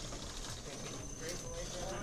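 Indistinct chatter of people around a robotics competition field, with a steady thin high-pitched tone and a couple of faint clicks.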